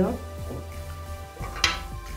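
Soft background music with steady tones, and one sharp click about one and a half seconds in as the small plastic lip-scrub jar and spatula are handled and put down.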